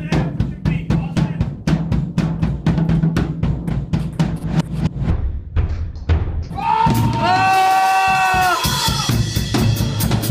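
Drum kit played in rapid rolls of snare and bass drum, about five strokes a second. Near the end the drumming breaks off for a long held shout of about two seconds, and then starts again.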